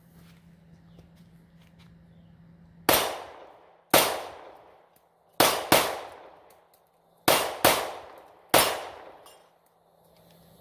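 Seven 9mm pistol shots fired at an uneven rapid pace, some in quick pairs, each with a short echoing tail.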